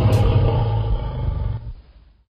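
A big cat's roar, deep and rumbling, laid on as a sound effect for a black panther. It fades away in the last half second into silence.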